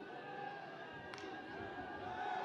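Faint stadium ambience of a broadcast football game, with faint music from the stands.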